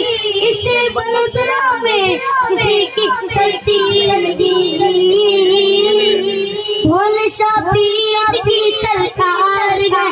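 A boy singing a devotional naat into a microphone, with ornamented, wavering melodic lines. A steady held note continues underneath the voice.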